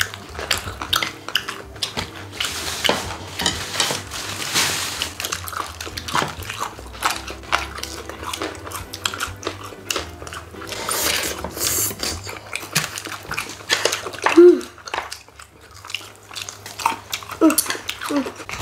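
People eating crispy fried chicken: many short crunches and chewing, with chopsticks clicking against plates and dishes.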